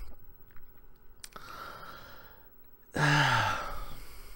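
A man draws a breath, then lets out a short, breathy voiced sigh that falls in pitch about three seconds in. A faint mouth click comes shortly before the breath.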